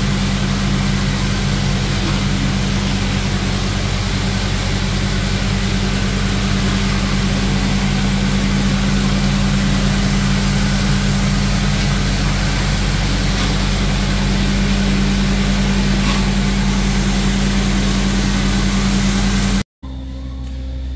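Rotary floor buffer running steadily, its motor humming while the black stripping pad scrubs unglazed tile wet with acid cleaner. The sound cuts off abruptly near the end.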